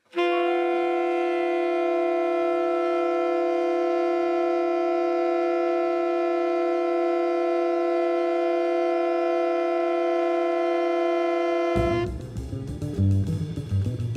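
A woodwind section of clarinets and flute holding one long, steady chord for about twelve seconds. Near the end the full band comes in with drums, bass and piano.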